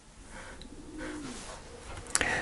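A dove cooing faintly, one low call about halfway through, over quiet room tone.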